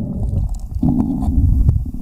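Water churning against an underwater camera as the creek bed is fanned by hand: a loud, muffled low rumble with a few faint clicks.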